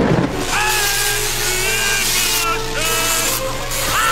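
Loud, harsh noise with several held, slightly wavering high tones laid over it in short stretches: an edited bed of dramatic sound effects and music.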